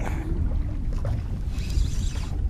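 Wind buffeting the microphone on open water, a steady low rumble, with a few faint small ticks.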